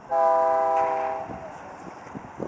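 A horn sounds one steady chord of several flat tones for about a second, then fades away.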